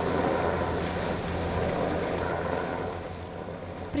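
A boat's engine running steadily, with water noise over it; it eases off a little near the end.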